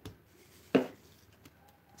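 A single sharp knock about three-quarters of a second in, from a small plastic paint bottle being handled on the work table, in an otherwise quiet room.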